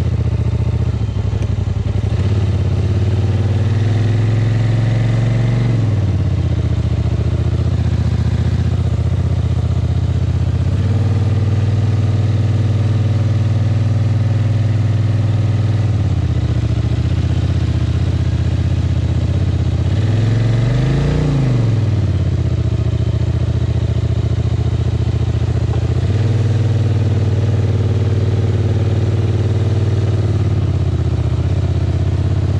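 A quad bike's (ATV) engine running as the machine crawls along a muddy forest track, the throttle opened and eased off every few seconds. About two-thirds of the way through there is one short rev that rises and falls.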